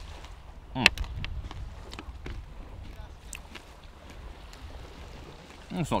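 A person chewing a mouthful of crunchy biscuit: a voiced 'mm' about a second in, then scattered crisp crunching clicks, over a steady low rumble.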